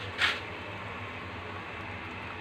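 Water at a rolling boil in a large metal pot, a steady quiet bubbling hiss, with one brief sharper hiss about a quarter second in.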